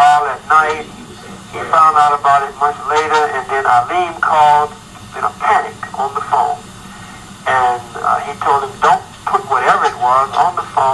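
Speech: a person's voice talking in runs of phrases, with short pauses about a second in and around the seventh second.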